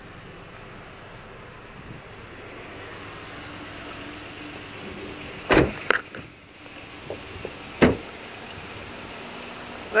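Steady background noise broken by three sharp knocks: two close together a little past halfway, and a single one about two seconds later.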